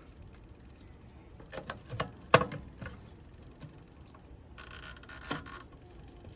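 Mechanical timer knob on a turbo broiler's lid being turned by hand: a few plastic clicks about two seconds in, one of them much louder, then a rasping sound about a second long near the end as the timer is wound.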